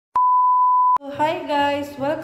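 A single steady, high test-tone beep of a TV colour-bars effect, just under a second long, starting and stopping abruptly.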